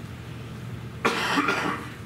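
A man coughing once, a sudden harsh burst about a second in that lasts under a second, muffled into his raised arm.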